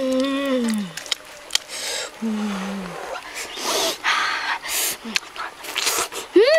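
A boy eating grilled fish by hand, humming short, falling 'mmm' sounds of enjoyment, one at the start and another about two seconds in, between mouth clicks, chewing and breathy noises.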